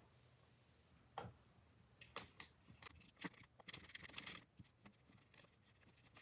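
Near silence, broken by faint, scattered taps and rustles from handling a paintbrush, jar and decoupage paper on a craft table.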